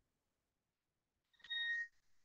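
Near silence, broken about a second and a half in by a faint click and then a brief, steady, high-pitched beep.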